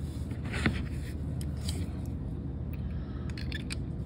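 Faint light clicks and scrapes of small metal parts as the rear adjuster is threaded onto a Gaahleri GHAC-68 trigger airbrush by hand, over a steady low background hum.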